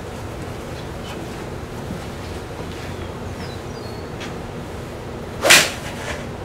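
A single iron shot struck off a hitting mat: one sharp, loud crack of clubface on ball about five and a half seconds in. The golfer says he could hear that the strike came in too steeply down, with the launch monitor reading five degrees down.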